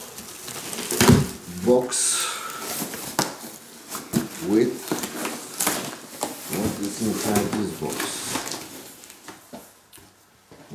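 Cardboard boxes being lifted and set down, with a sharp knock about a second in, a rustle of packing material just after, and scattered handling clicks. A voice is heard indistinctly at several points between the handling sounds.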